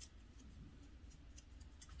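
Near silence with a few faint, scattered small clicks from handling a lip liner pencil.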